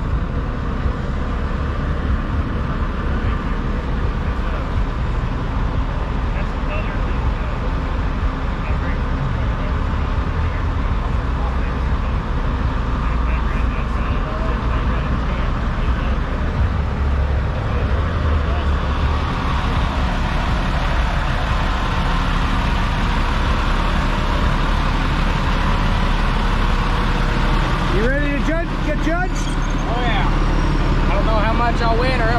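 Idling diesel semi-truck engine, a steady low rumble, with people's voices in the background near the end.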